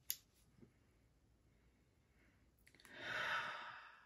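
A woman takes one long audible breath, lasting just over a second, about three seconds in, as she smells a perfume. There is a faint click right at the start.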